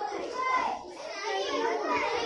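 Many young children talking at once: overlapping classroom chatter with no single voice standing out.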